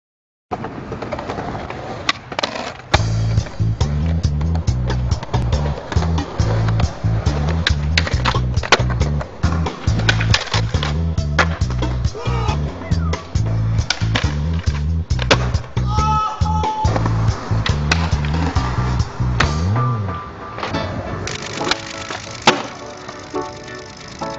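Skateboard sounds, with many sharp board pops and landings on concrete and wheels rolling, over a music soundtrack with a heavy repeating bassline. The bass drops out near the end.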